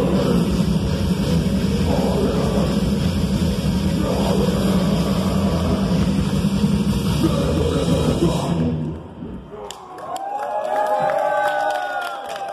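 Live metal band playing loud distorted electric guitars over drums, the song stopping suddenly about nine seconds in. The audience then cheers and whoops.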